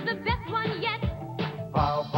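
Commercial jingle: singing over a backing track with a drum beat, with fuller voices coming in near the end.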